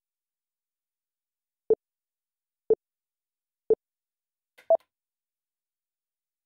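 Sync countdown timer beeping: three short low beeps a second apart, then one higher beep, which marks the frame at which the episode starts playing.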